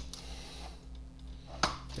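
Small clicks of a screwdriver and screw working against the metal RF shield of a Coleco Adam Data Drive, with one sharp click near the end, over a steady low hum.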